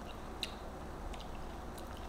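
A few faint, short clicks from someone chewing a mouthful of year-old kimchi.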